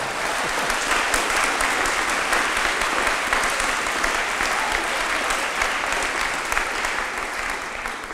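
Audience applauding: a steady patter of many hands clapping that dies away near the end.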